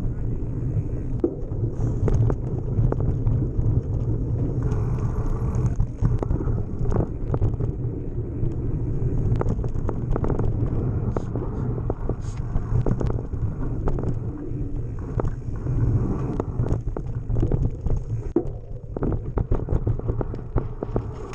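Mountain bike riding rough dirt singletrack, heard from a camera mounted on the bike: a steady low wind rumble on the microphone under the knobby tyres' noise, with frequent rattles and knocks as the bike goes over bumps.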